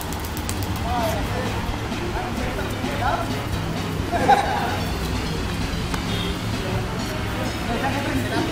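Background music mixed with people's voices calling out and shouting during a game, with one louder shout about four seconds in.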